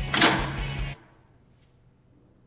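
A short loud noisy clunk as a wall-mounted lights switch is thrown, over background music that cuts off abruptly about a second in, leaving near silence.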